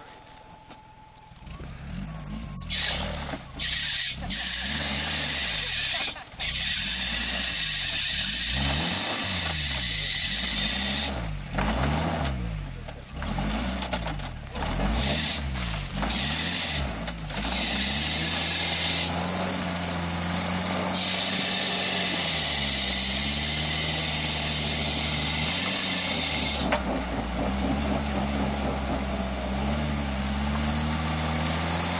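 Geo Tracker's four-cylinder engine revved hard again and again with the wheels spinning in deep mud, a stuck 4x4 trying to drive itself out. From about halfway it is held at high, wavering revs, with a high squeal rising and falling along with it.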